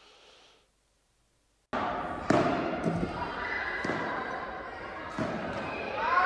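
Padel ball struck by rackets during a doubles rally in a large indoor hall: about four sharp hits with some echo, over the room's noise and players' voices. It starts suddenly about two seconds in, after a short silence.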